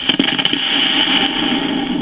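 Surface noise of an old home-recorded disc playing on with no voice left on it: a steady loud hiss and rumble with a few sharp clicks near the start.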